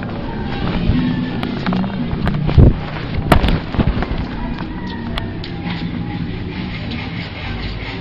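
Phone microphone handling noise as the camera is moved about: rubbing and rumble with a few sharp knocks, the loudest about two and a half and three and a half seconds in.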